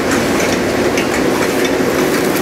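Steady background noise, a low hum with hiss over it, running evenly with no break.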